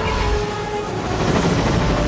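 Film soundtrack mix: held, horn-like brass chords over a loud low rumble and rushing noise.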